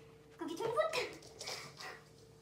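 A dog vocalising with a whining yowl that rises and then falls in pitch, starting about half a second in, followed by two shorter sounds.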